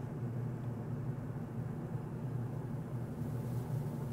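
Steady low background rumble with no other events.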